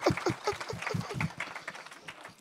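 A crowd applauding in a hall, quick overlapping claps that thin out and die away by the end.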